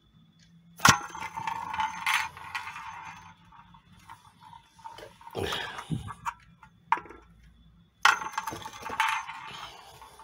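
A small metal tippe top spun by hand in a nonstick frying pan: a sharp click as it is set going, then a rattling whir as it spins and skitters on the pan, fading out. This happens again twice, the last time starting with another sharp click about eight seconds in.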